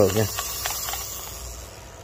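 Large Ryobi spinning fishing reel cranked by hand: a steady whirring hiss from the turning rotor and gears that slowly fades out, with a few faint clicks. The retrieve runs smooth, a sign the reel is in good working order.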